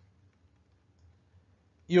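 A couple of faint clicks from a stylus tapping on a pen tablet during handwriting, about a second in, over a low steady hum. A man's voice starts at the very end.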